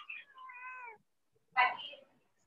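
A high-pitched, drawn-out cry that rises and falls over about a second, coming through an attendee's unmuted microphone on an online call. A second, shorter sound follows near the end.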